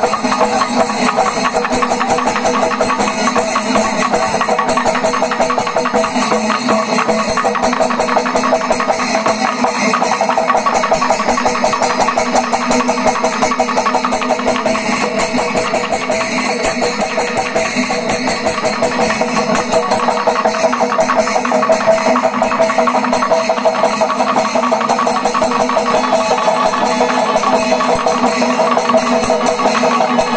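Kerala panchavadyam temple ensemble playing a loud, dense, fast rhythm: timila and maddalam drums with ilathalam cymbals, over steady held tones.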